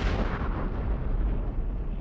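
A large explosion on the water: a sudden blast, then a deep rumble that carries on as the higher sound dies away.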